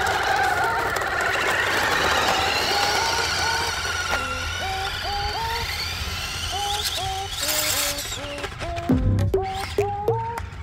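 Background music with a repeating melody of short notes, over the high whine of a toy-grade 1/8 scale RC car's electric motor and drivetrain, now fitted with the correct-pitch pinion gear, as it runs off down the asphalt. The whine rises and falls in pitch with the throttle.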